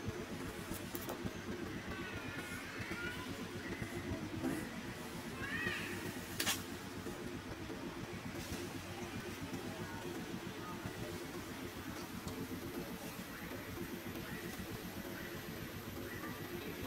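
A few short, high, wavering squeaks from a baby macaque in the first six seconds, over a steady low background rumble, with one sharp click partway through.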